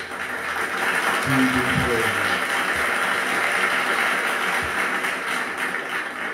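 Applause and praise in answer to a call to praise the Lord: a steady noise of clapping, with a voice calling out briefly now and then.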